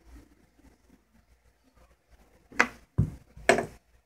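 Faint room tone, then three short knocks or bumps in the second half, about half a second apart.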